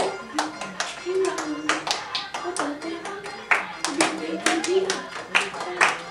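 Group hand clapping in a Giddha dance rhythm, about two to three claps a second, with a pitched tune running underneath.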